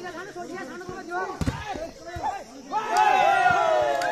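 Spectators chattering around an outdoor volleyball court, with the sharp slap of the ball being struck about a second and a half in. Near the end the crowd breaks into loud, sustained shouting.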